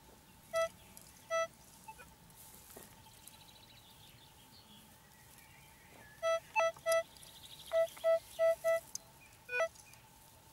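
Metal detector target tones as the coils are swept over buried metal: two short beeps near the start, then a quick run of about seven beeps on the same pitch from around six seconds in, ending with a short rising chirp.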